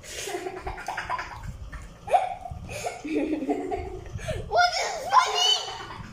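A child laughing and giggling in short fits, with some mumbled child speech; the loudest laughing comes near the end.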